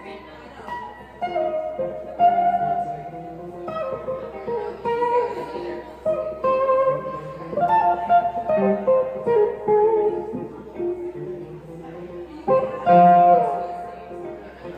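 Electric guitar, a sunburst Stratocaster-style instrument, played live through an amplifier. It plays a funky instrumental line of single notes and double-stops that changes pitch every half second or so, with bent notes. The loudest passage starts about a second and a half before the end.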